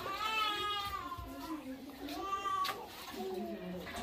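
A baby or toddler crying: several drawn-out wailing cries, the first one long and slowly falling in pitch.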